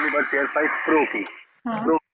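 Speech only: a voice heard as a recorded phone call, thin and cut off in the highs like a phone line, with a short pause near the end.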